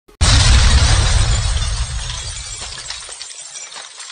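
Glass-shattering sound effect from an animated intro: a sudden loud crash with a deep boom, fading over about three seconds into scattered tinkling fragments.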